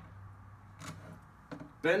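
Faint handling sounds: a couple of light clicks as a plastic chronograph sunshade is fitted over its thin support rods, with a low steady hum underneath. A man's voice comes in near the end.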